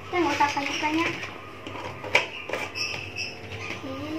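A girl's voice sounds briefly in the first second without clear words, then come a couple of light clicks and knocks as a glass jar of meat floss is handled over a plate.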